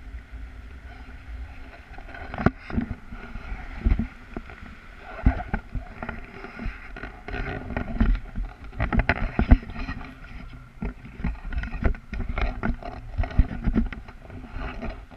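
Wind buffeting an action camera's microphone in flight under a paraglider, a steady low rumble broken by frequent irregular thumps and knocks from the camera being handled against the harness and clothing.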